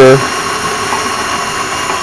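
KitchenAid stand mixer's electric motor running steadily, its beater turning through a bowl of creamed sugar, eggs and butter as milk is poured in.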